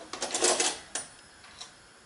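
Objects handled on a kitchen counter close to the microphone: a short burst of clattering and rustling, then two light clicks.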